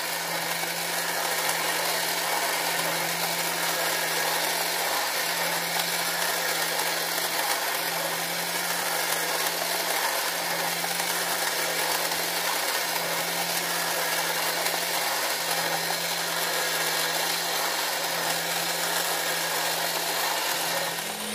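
Clear plastic model four-cylinder engine turned by its small battery-powered electric motor, running with a steady, slightly noisy mechanical whir from its moving pistons, belts and valve gear.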